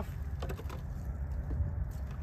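A few light clicks and scrapes of a metal hive tool against the wooden frame of a package of bees, over a steady low rumble.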